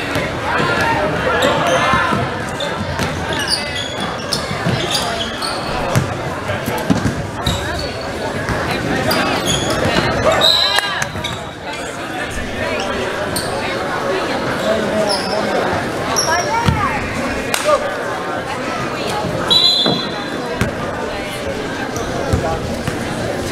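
Basketball bouncing on a hardwood gym floor during play, with voices echoing around a large gym. Short high-pitched squeaks are scattered through, typical of sneakers on the court.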